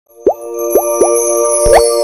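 Electronic logo-intro sting: three quick rising pops, then a longer upward swoop with a low thump, over a held bright chord.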